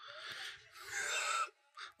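A person's quiet, breathy gasps: two short breaths in quick succession, airy and without voiced pitch.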